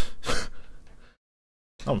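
Two short, sharp breaths from a man, about a third of a second apart, then the sound drops out completely for about half a second.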